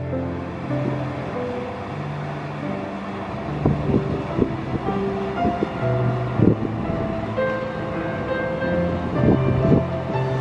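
Background music of held notes with occasional percussive hits.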